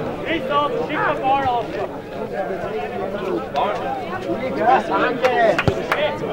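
Men's voices shouting and talking across a grass football pitch, several overlapping, with one sharp knock near the end.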